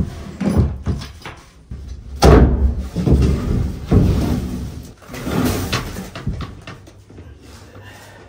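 Thumps and knocks of a person crawling across OSB floor boarding in a cramped loft, several in an uneven run, the heaviest about two seconds in.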